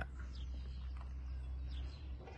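Quiet outdoor background: a steady low rumble with a couple of faint, short bird chirps.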